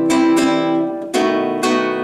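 Nylon-string guitar strummed in a syncopated rhythm: a ringing C major chord changes to B7 about a second in, with a strum stroke soon after.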